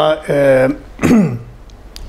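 A man clearing his throat about a second in, a short sound that falls quickly in pitch, after a brief held vocal sound between phrases of his speech.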